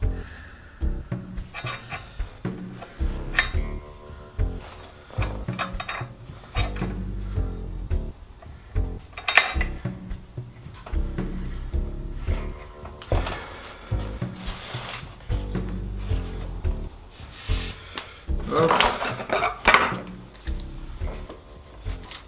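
Background music, with clicks, knocks and rubbing from metal F-clamps and bar clamps being handled and tightened on a wooden bass glue-up. The loudest handling noise comes about halfway through and again about three-quarters of the way through.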